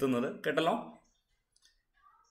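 A man's voice speaking, trailing off about a second in, then dead silence.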